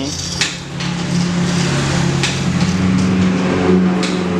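A motor vehicle engine running steadily close by, its pitch rising a little about a second in and again near the end. A couple of light metal clinks from steel sprockets and a ruler being handled.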